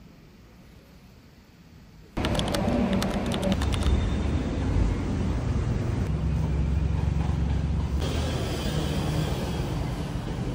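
Quiet room tone, then about two seconds in a sudden change to loud city street noise: a steady low traffic rumble with a few clicks, lasting to the end.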